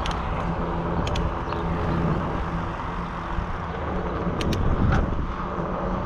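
Wind and road noise on a bicycle-mounted action camera while riding, a steady rumble with a low hum under it and a couple of light clicks.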